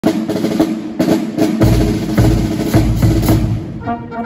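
Wind band's drums playing a march introduction: sharp snare drum strokes and rolls, with a bass drum joining about one and a half seconds in on a steady beat.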